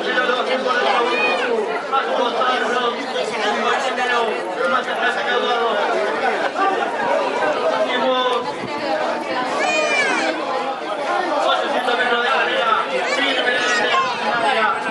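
Many people talking over one another, steady and close, with a few raised calls rising above the chatter.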